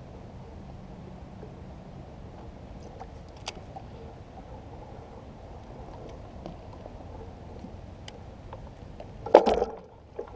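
Low, steady lapping and wash of harbor water around an inflatable float tube, with a few faint clicks from a baitcasting reel being handled. Near the end there is one sudden loud knock and clatter.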